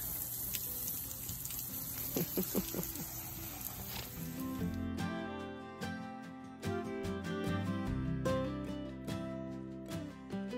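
Water spraying steadily from a garden hose for about the first five seconds, then an abrupt change to background music with plucked guitar.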